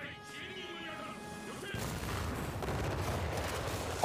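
Anime soundtrack playing quietly: a character speaks a short line over music, then from about two seconds in a rumble of battle noise, gunfire and explosions, builds under the score.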